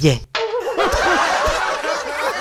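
A group of voices laughing together, several people at once. The laughter starts suddenly a moment in, after a brief silence.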